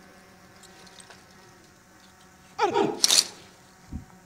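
A person's voice, about two and a half seconds in: one short, drawn-out vocal sound that ends in a sharp hissing burst.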